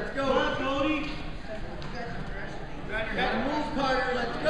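Men's voices shouting instructions from the sidelines, the words unclear, over a low steady background hum.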